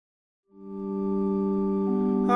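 Silence, then a sustained organ-like chord of several held notes fades in about half a second in, with one note shifting near the end: the opening chord of the accompaniment to a chanted psalm.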